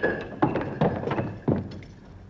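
A run of about five dull thuds, knocks or blows, each short with a little ring after it, spread over about a second and a half.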